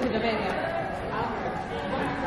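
Indistinct chatter of voices in a large, echoing room.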